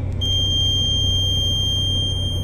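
Warning buzzer in the cab of a Liebherr LTM1090 crane sounding one steady high beep that starts a moment in, while the rear axle suspension is being lowered. Under it runs the steady low drone of the idling crane engine.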